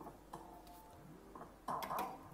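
Merkur slot machine giving faint electronic ticks and short beeps as credits are booked over into the cashpot. A louder electronic tone comes near the end.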